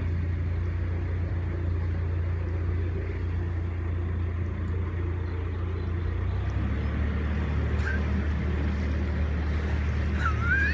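A narrowboat's diesel engine running steadily as the boat moves slowly along the canal. About six seconds in the engine note shifts, as the throttle is changed.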